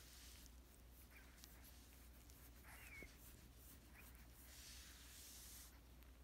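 Near silence, with one faint, short squeak from a Chihuahua puppy stirring awake about three seconds in, and a soft rustle of fabric near the end as it rolls over on the blanket.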